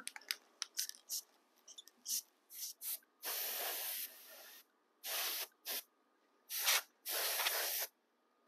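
Aerosol can of matte clear finish spraying in a series of short hissing bursts, with two longer passes of about a second or more, one near the middle and one near the end.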